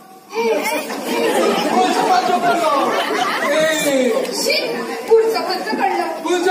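Speech only: stage actors talking, their voices carried through a large hall's sound system, after a short pause right at the start.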